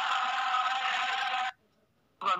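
Many voices chanting together, a dense unison drone of a devotional mantra, which cuts off abruptly about one and a half seconds in, leaving a brief near-silence.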